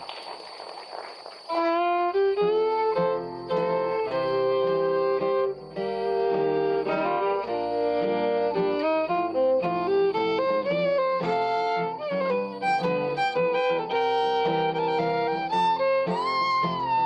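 Fiddle playing a waltz melody, with two acoustic guitars strumming the accompaniment. The music starts about a second and a half in.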